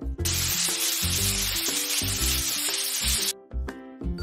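A loud, steady hiss that starts just after the beginning and cuts off suddenly about three seconds later, over children's background music.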